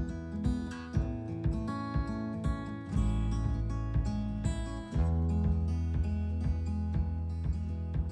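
Background music: an acoustic guitar piece with plucked and strummed notes over a steady bass line.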